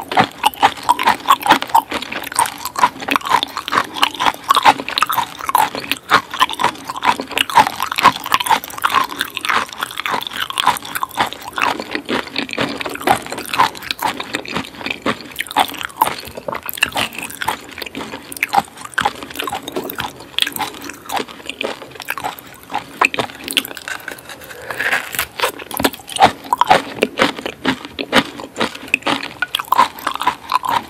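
Close-miked biting and chewing of raw coconut worms (palm weevil larvae) in fish sauce: a dense, continuous run of short mouth clicks and smacks.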